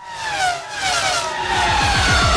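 Car fly-by sound effect: an engine note sweeping past with steadily falling pitch, with a low pulsing engine sound growing louder near the end.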